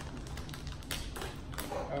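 Plastic candy-bar wrapper crinkling and crackling as it is handled and pulled open, with a few sharp crackles about a second in.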